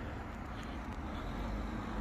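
Steady low rumble of road traffic in a town street.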